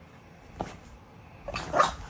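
French bulldog puppy giving one short, loud bark near the end, after a mostly quiet stretch with a faint tap about half a second in.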